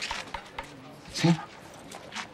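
Scattered light knocks and taps of hand tools on wood, as in a carpentry workshop, with a short spoken word about a second in.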